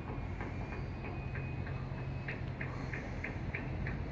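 Regular ticking, about three ticks a second and getting louder a little past halfway, over a steady low hum.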